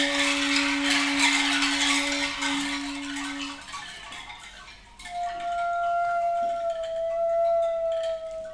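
Contemporary wind-quintet music: a held low horn note under a sudden dense burst of hissing and clicking that dies away after about four seconds. A single held higher wind note then enters about five seconds in and sags slightly in pitch.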